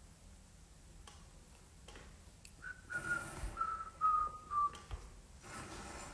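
A person whistling a short phrase of a few held notes that step down in pitch, from about halfway through for roughly two seconds.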